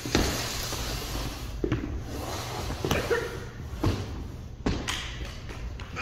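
Five dull knocks and thumps at irregular intervals, roughly a second apart, over steady rustling handling noise, with a roomy echo.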